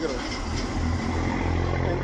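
A steady, low engine rumble with hiss, like a motor vehicle running nearby.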